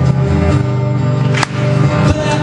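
Acoustic guitar strumming held chords of a slow, down-tempo song, with a sharp new strum about one and a half seconds in, just after a brief drop.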